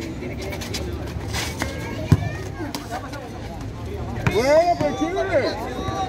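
Crowd of spectators chattering around an outdoor ecuavoley court, with one sharp knock about two seconds in. From about four seconds in, voices shout out louder, rising and falling in pitch.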